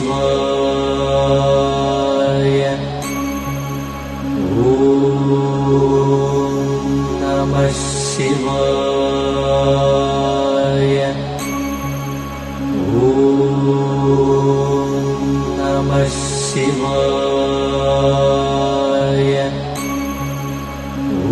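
Chanted devotional mantra over a steady drone, a repeating recorded chant whose phrase comes round about every eight seconds.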